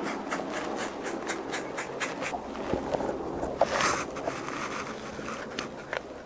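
Spruce bark being worked loose and peeled from a standing trunk by hand: a run of quick scraping strokes, about five a second, for the first two seconds, then a louder rasp a little past the middle.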